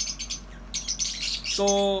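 Many caged lovebirds chirping together in a steady stream of quick, high, sharp calls.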